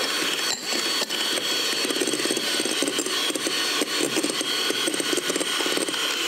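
Electric hand mixer running steadily with a high whine, its beaters whipping egg whites and sugar in a glass bowl.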